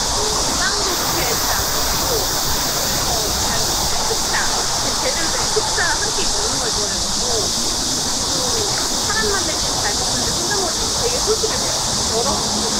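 A steady, even hiss of outdoor noise with scattered bits of chatter from people on top of it.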